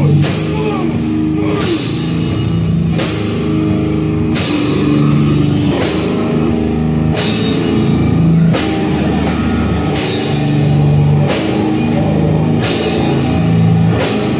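A metal band playing live in rehearsal: a slow, heavy riff of long, held distorted guitar notes over drum kit, with cymbal crashes about every second and a half.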